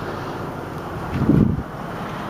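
Steady low hum of a car cabin, with a brief low rumble on the microphone a little past the middle as the handheld camera is swung around.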